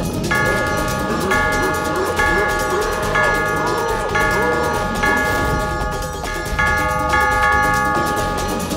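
A large bell rung again and again, about once a second, each stroke a cluster of bright ringing tones, with a pause near the end before two more strokes. Under it a cartoon gorilla growls.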